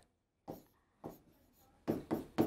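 Handwriting on an interactive display screen: a few faint, brief pen strokes scratching across the glass surface as a formula is written.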